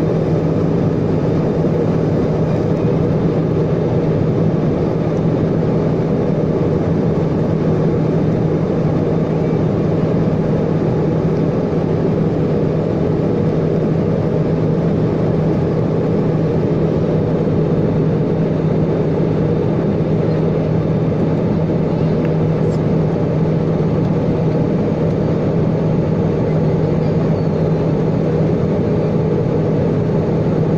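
Steady cabin noise of a jet airliner in flight, heard from a window seat: a constant rush of engine and airflow with an even low hum underneath, unchanging throughout.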